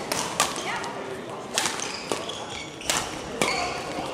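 Badminton rally: rackets striking the shuttlecock in several sharp hits about a second apart, echoing in a large sports hall, with short high squeaks of shoes on the court floor.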